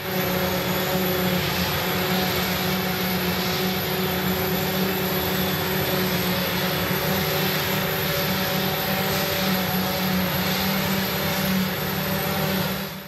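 Claas forage harvester running steadily while it chops hay and blows it into a truck: a constant, even machine drone with a steady hum.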